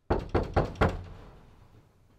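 Four quick, loud knocks on a closed door, about four a second, the last one fading away.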